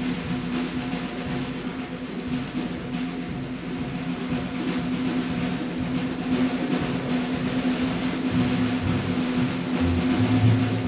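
A live jazz band plays, with drum-kit cymbal strokes over a held low note. Low bass notes come in near the end.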